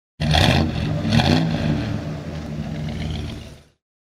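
Car engine revved in two quick blips, then running more steadily before fading out near the end.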